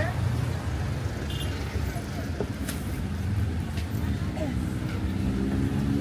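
Street traffic: a steady rumble of passing vehicle engines, with snatches of passers-by talking. About two-thirds of the way through, one nearby engine comes in and grows more prominent.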